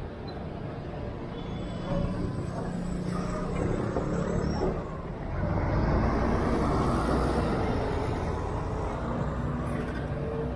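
Street traffic noise from motor vehicles running and passing, growing louder from about five seconds in.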